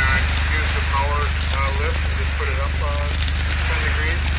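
Dry prairie grass burning with faint crackling, under a heavy steady rumble of wind on the microphone. A voice talks on and off throughout.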